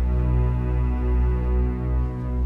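Eerie background film score: a loud, low sustained drone with held tones layered above it.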